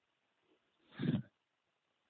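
Silence broken about a second in by one short, low vocal sound from a man, lasting under half a second.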